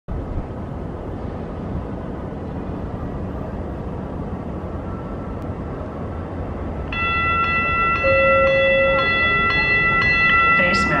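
Siemens S70 light rail train approaching: a steady rumble, then about seven seconds in a louder high ringing of several tones sets in, pulsing about twice a second.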